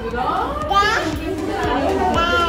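A toddler's voice with adults' voices, one high voice gliding sharply up in pitch a little before the middle.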